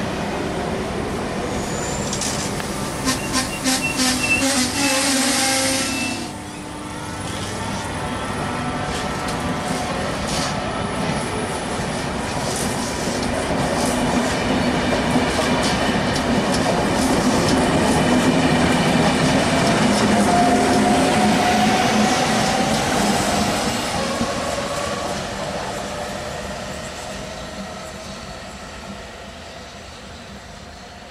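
Trenitalia Rock double-deck electric multiple unit running past, its wheels clattering over the rail joints and squealing for a few seconds early on. Its running noise then swells with a faint rising motor whine and fades as the train goes away.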